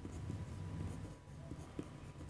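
Pen writing on paper: faint scratching strokes as a word is written out, over a low steady room hum.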